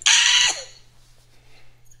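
A woman's short, high-pitched burst of laughter, about half a second long.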